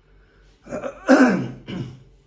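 A man coughs, clearing his throat, in one harsh burst lasting about a second, starting just over half a second in.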